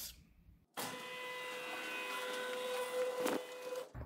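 Electric garage door opener running, a steady motor hum and whine as the door travels. It starts about a second in and stops just before the end, with a few light clicks near the end.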